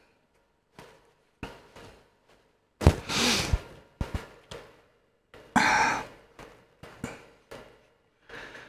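Off-camera handling: a scattered series of light knocks and clicks of small objects being picked up and put down, with two longer breathy sighs, about three seconds in and again near six seconds.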